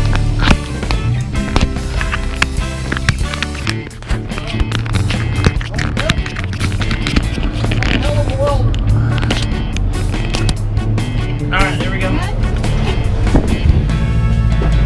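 Background music with a steady beat, with a voice that comes in near the middle.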